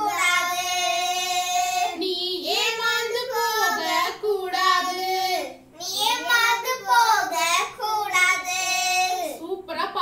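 Young girls singing a children's action song without accompaniment, in phrases of long held notes with short breaks between them.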